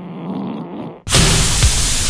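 A novelty fart sound effect played through a smart display's small speaker, a buzzing, strained-sounding fart lasting about a second. It is cut off by loud distorted rock music with drum hits.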